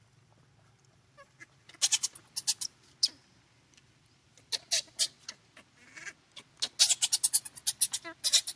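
Baby pigtail macaque squealing in short, shrill, piercing cries, coming in three bouts with a fast run of squeals near the end.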